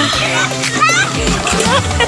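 Voices, children's among them, chattering over background music.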